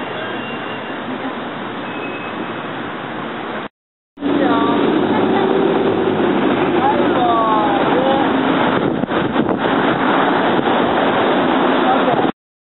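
Outdoor beach ambience: a steady rush of wind and surf, cut off abruptly about four seconds in, then coming back louder with people's voices talking nearby over the wind noise.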